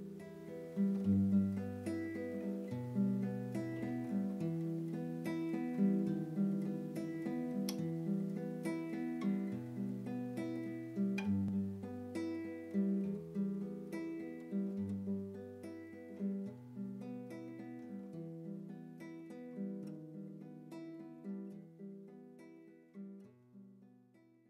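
Solo acoustic guitar music: plucked notes ringing over low bass notes, slowly getting quieter toward the end.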